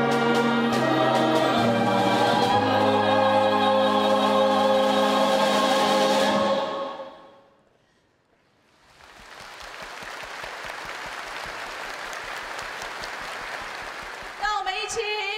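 Live ensemble of strings, woodwinds and percussion with a choir finishing a song, ending on a long held chord that fades out about seven seconds in. After a brief near-silence comes a steady, quieter noise of the large audience applauding.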